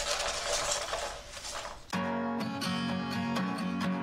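Foam packing peanuts and loose wood strips rustling and crackling as a hand rummages in a kit box. About halfway through, background music with plucked guitar starts suddenly.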